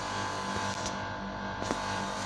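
Steady low hum of running machinery, with a faint click near the end.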